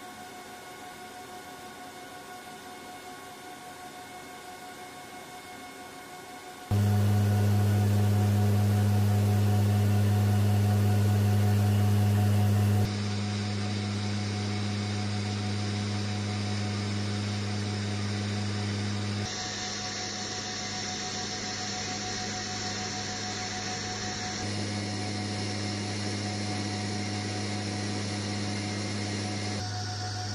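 Steady in-cabin drone of the MC-130J Commando II's four turboprop engines and propellers, a deep even hum with a constant pitch. The level jumps up sharply about seven seconds in, then steps down abruptly a few times at edit cuts.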